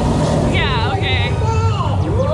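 Flying-theatre ride soundtrack playing loud over a deep, steady rumble. About half a second in, pitched sounds sweep quickly down from high to middle pitch, and another slides down near the end, mixed with what sounds like character voices.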